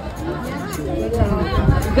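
People chatting nearby, indistinct, with a low rumble on the microphone in the second half.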